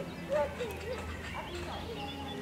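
Young children's voices: short, high-pitched gliding calls and chatter, several in quick succession, over a faint low steady hum.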